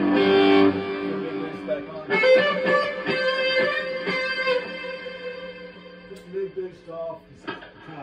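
Electric guitar played through an overdrive circuit: a chord rings out at the start, a new chord is struck about two seconds in and fades away, and a few single notes are picked near the end.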